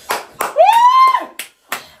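A person's long whoop, its pitch rising, holding and then dropping, with a few sharp clicks from the hands before and after it.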